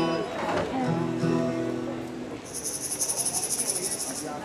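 Acoustic stringed instruments of a bluegrass band sounding a few held notes. About two and a half seconds in, an insect's rapid, high-pitched pulsing trill starts up and carries on.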